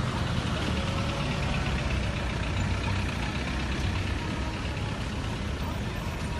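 Road traffic close by: vehicle engines running with a steady low rumble as a minibus and cars move past, with voices in the background.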